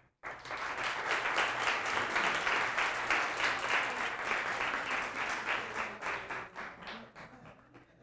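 Audience applauding: many hands clapping together, starting suddenly and dying away over the last two seconds.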